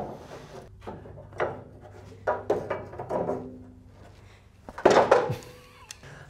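Scattered knocks and clanks of a steel pry bar and wooden block against the steel frame as cable guide tubes are levered aside, with a louder clatter about five seconds in.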